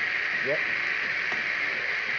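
Gaggia Anima bean-to-cup coffee machine's automatic milk frother steaming and frothing milk into a glass, a steady hiss.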